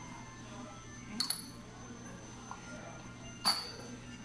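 Light ringing clinks of a small spoon against a ceramic condiment pot and dipping bowl: a quick double clink about a second in, then a single, louder clink near the end.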